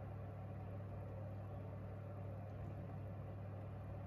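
A steady low hum with a faint even hiss behind it, unchanging throughout; the sprinkling of spices makes no distinct sound.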